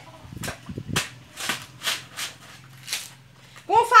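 Green coconut husk being torn off by hand after splitting on a hoe blade: about six short, sharp ripping cracks of the fibrous husk spread over a few seconds.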